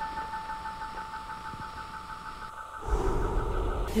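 Electronic title-card sound effect: a steady hum-like tone with a higher warbling tone over faint hiss, joined by a low rumble about three seconds in.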